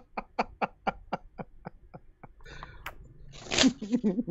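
A man laughing, a quick run of short 'ha' pulses about four a second that fade away over the first two seconds. Near the end comes a short, louder slurp of a sip from a mug.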